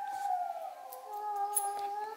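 A wolf howling on a movie soundtrack playing through a television: one long, steady howl, joined a little past halfway by a second, lower howl.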